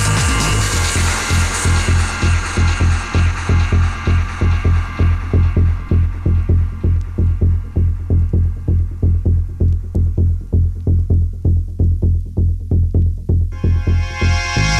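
Progressive house DJ mix in a breakdown: a throbbing bass line pulses about twice a second while the higher synth layers filter away. Near the end, bright synth chords come back in over it.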